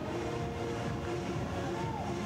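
Steady, low stadium ambience with faint distant voices and no crowd noise.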